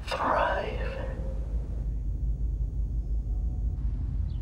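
A brief breathy, whisper-like sound, then a steady low rumble on the microphone.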